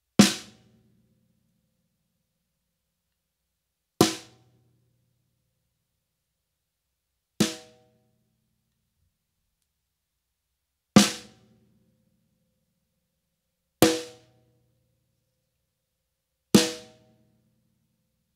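Snare drum struck six separate times, a few seconds apart, each hit ringing briefly and dying away. The strokes compare a wooden drumstick, Promark Thunder Rods (bundled dowels) and Promark Broomsticks (bundled broom straw) in turn.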